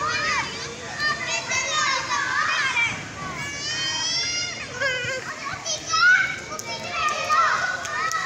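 Children's high voices shouting and calling out at play, a string of short, sliding cries, the loudest about six seconds in.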